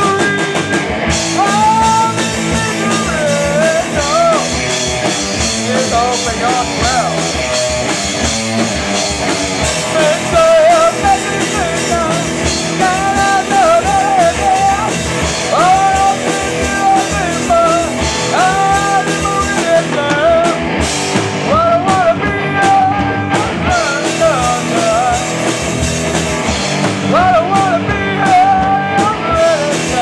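A band playing rock live, with two electric guitars and a drum kit, and a lead singer's voice carrying the melody over the guitars.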